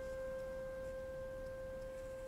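Film-score music: a single soft, pure-toned note held steadily, with faint overtones.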